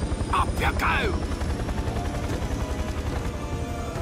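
Cartoon aircraft sound effect: a fast, steady low rotor chop like a helicopter's. A brief voice sounds about half a second in, and music comes in near the end.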